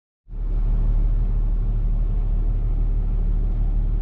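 Semi truck's diesel engine idling, a steady deep rumble heard inside the cab, starting abruptly just after the opening.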